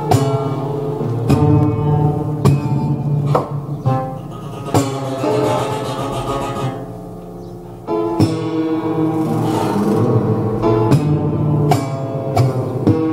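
Live improvised music from strings struck and plucked inside a large rusty metal-framed instrument: sharp attacks every second or two, each note ringing on in several overlapping tones, with a softer stretch in the middle.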